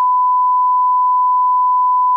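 Steady electronic sine-tone bleep at about 1 kHz, one unbroken pitch with nothing else under it, of the kind dubbed over a word as a censor bleep.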